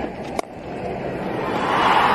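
Cricket bat striking the ball: one sharp crack about half a second in, followed by a steadily rising wash of crowd noise.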